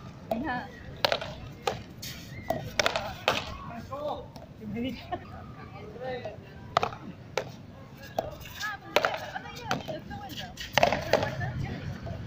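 Frontón rally: paddles striking a small ball and the ball hitting the concrete wall and court, a series of sharp cracks at irregular intervals, the loudest near the end.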